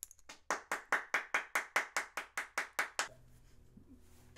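One person clapping hands in an even rhythm, about five claps a second, starting about half a second in and stopping after about two and a half seconds.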